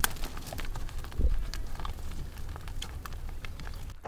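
Open-air field ambience: a steady low rumble with light clicks and crackles scattered through it, and a brief low swell about a second in.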